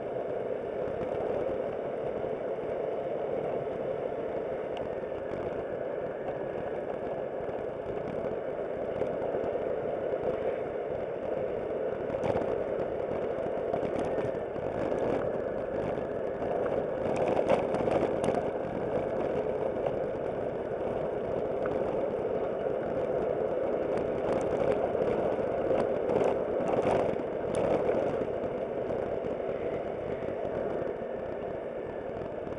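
Aprilia SportCity scooter running at a steady road speed, its engine drone mixed with road noise as picked up by a dashcam. From about the middle on, short bouts of rattling clatter break in repeatedly over the drone.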